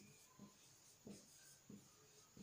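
Faint short strokes of a marker writing on a whiteboard, a few in a row about half a second apart.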